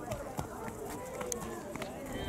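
Indistinct voices of people talking in the background, with a few light clicks scattered through.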